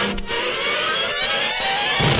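Orchestral cartoon score, with a line that rises steadily in pitch through the second half.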